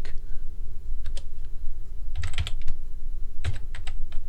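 Computer keyboard being typed on: single key clicks and short quick runs of keystrokes, over a low steady hum.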